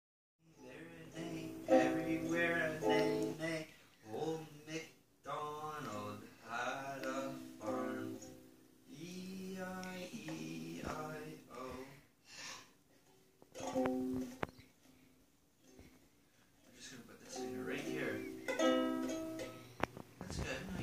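A small child's ukulele being strummed, with a voice singing along in phrases broken by short pauses.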